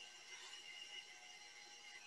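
Near silence: faint room tone with a few thin, steady high-pitched tones.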